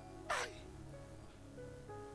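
Soft background music of sustained, held chords, with one brief voice sound gliding downward in pitch about a third of a second in.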